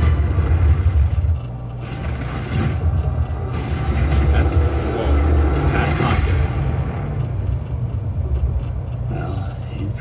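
Action movie trailer soundtrack: dramatic score under heavy, deep rumbling sound effects of giant robots and monsters.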